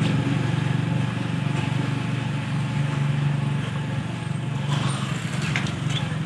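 Steady engine drone and road noise of a moving vehicle: a low, even hum that hardly changes.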